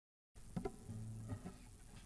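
Faint handling noise from a classical guitar before it is played: small clicks and rustles, with a brief soft low string tone about a second in.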